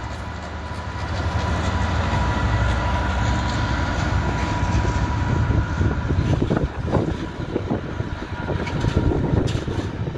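A Freightliner Class 66 diesel locomotive passes, its two-stroke V12 engine running with a steady low rumble. Its train of loaded container wagons then rolls by, and from just past the middle the wheels clatter and knock over the rail joints.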